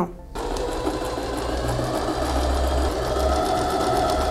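Domestic electric sewing machine stitching a straight seam, starting about a third of a second in and then running steadily: a motor whine with fast, even needle ticking.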